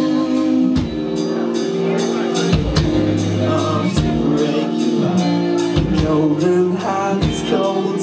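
Live rock band playing: electric guitars and bass holding chords over drums with regular cymbal hits, and a voice singing.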